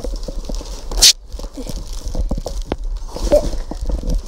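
Plastic bubble-wrap packing in a cardboard box being handled and pulled about: a run of crinkles and small clicks, with one loud, short rustling burst about a second in.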